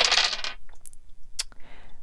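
Small dice rolled onto a wooden tabletop: a clatter as they land, then a few separate clicks as they bounce and settle.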